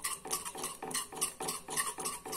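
Steel spoon stirring and scraping a thick paste around a metal pan, in quick regular strokes about four a second.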